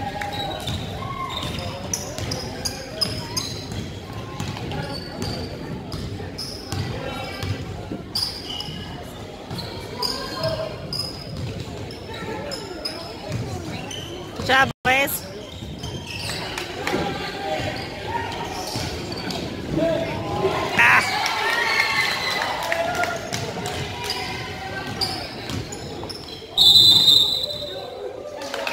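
Basketball being dribbled on a hardwood gym floor, the knocks echoing in the hall over the murmur of spectators' voices. The sound cuts out briefly about halfway. Near the end a loud, steady high whistle blast sounds, a referee's whistle stopping play.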